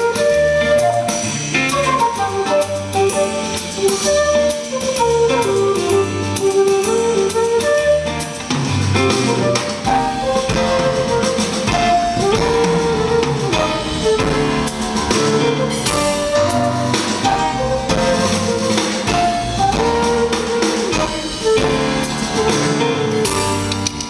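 Live band playing a jazz instrumental, with a flute melody over electric guitar, bass and drums; the low end fills out about ten seconds in.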